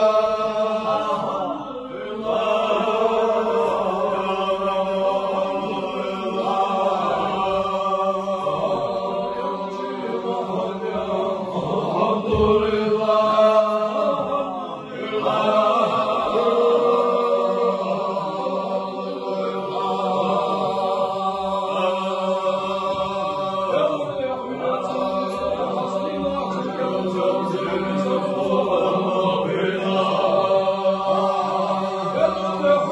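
Group of men's voices chanting a zikr together, an Islamic devotional chant in long melodic phrases over a steady low held note. The chant dips briefly about two seconds in and again about halfway through.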